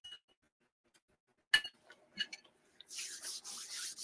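A few faint, short clinks and clicks, the sharpest about one and a half seconds in, then a soft breathy rush over roughly the last second.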